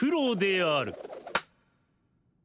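A voice speaking one short phrase with a falling pitch, followed by a single click.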